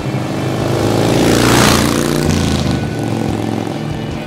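Motorcycle passing by, its engine sound swelling to a peak about a second and a half in and then fading away.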